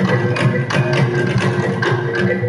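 Live traditional percussion ensemble music: tuned gongs ringing held notes over a steady, regular beat of struck strokes.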